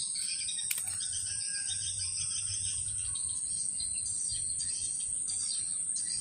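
A steady high insect drone with birds chirping over it, and a single sharp click a little under a second in.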